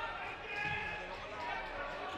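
Faint game sound of a floorball match in a large sports hall: distant players' and spectators' voices with light knocks of sticks and the plastic ball on the court floor.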